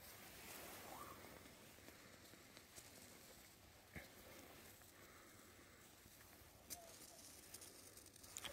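Near silence: faint outdoor background with two brief faint clicks, one about halfway through and one near the end.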